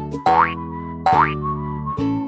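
Light children's background music with held notes, broken by two short cartoon boing effects that sweep upward in pitch, about a quarter second and a second in.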